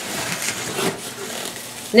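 Plastic bag around a glass lid rustling as a styrofoam packing insert is handled, with a light knock a little before one second in.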